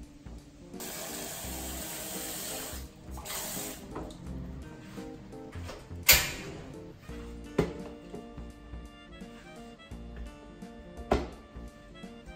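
Background music throughout, over kitchen work: from about a second in, water runs from a tap for about two seconds and briefly again, then three sharp clatters of kitchenware about six, seven and a half and eleven seconds in, the first the loudest.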